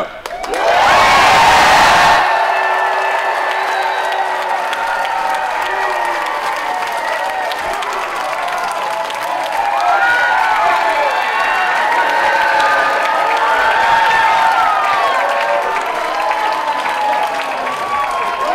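Large audience cheering: a loud burst of applause and shouting in the first two seconds, then sustained whooping and yelling from many voices.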